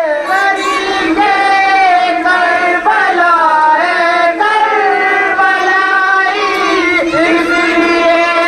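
A high-pitched voice singing a slow melody in long, wavering held notes, with short breaks between phrases.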